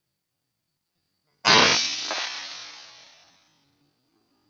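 A single air rifle shot about one and a half seconds in, sudden and loud, with a tail that dies away over about two seconds.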